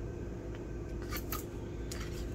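Pages of a paper sticker book being flipped by hand: two quick paper flicks a little past a second in and another near the end, over a steady low hum.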